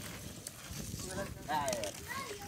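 Inline skate wheels rolling over a rough asphalt road with shuffling, clopping footsteps. Brief voices are heard from about a second in.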